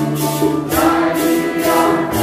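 A mixed congregation singing a Santo Daime hymn together in Portuguese, with shaken maracas keeping a steady beat about twice a second.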